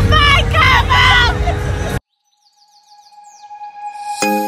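A woman's voice speaking in a drawn-out, sing-song way over street noise and background music, cut off suddenly about halfway through. After a moment of silence, music fades in with high, bird-like chirps and held tones.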